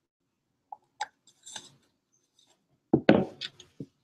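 Handling of paint-mixing tools at a metal paint tray: a few light clicks, then a burst of louder knocks and clatter about three seconds in.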